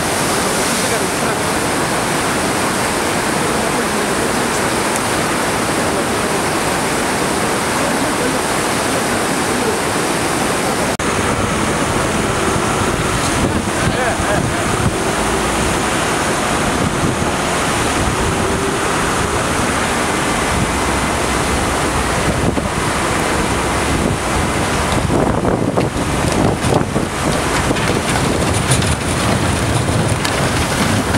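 Loud, steady rush of a river in brown flood, with wind buffeting the microphone. About a third of the way in, a lower rumble joins. Near the end, irregular knocks and rumbling come as a tipper truck dumps a load of rocks down the eroded bank.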